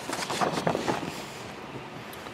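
Faint handling noise: scattered light clicks and rustling for about the first second, then a quiet steady hiss.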